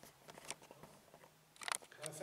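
A quiet pause in a meeting room: faint room noise with a small click about half a second in and a short cluster of sharp clicks or rustles near the end.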